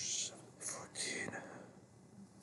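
A man muttering under his breath in a near-whisper: a few short, breathy syllables in the first second or so, then fading away.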